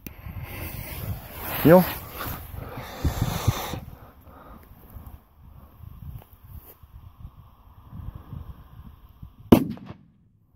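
A small P1 firecracker (Böller) goes off with a single sharp bang near the end, not as strong as a TP5 firecracker. Voices are heard in the first few seconds.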